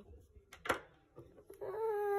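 A child's voice in play-acting dismay: a short 'uh' about a second in, then a drawn-out whimpering 'oh' that begins near the end and grows louder.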